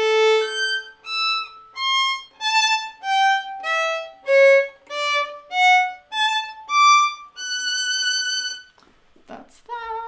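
Solo violin played slowly: about a dozen separate bowed notes with short breaks between them, moving up and down in pitch with shifts of the left hand along the fingerboard. The passage ends on one longer held note.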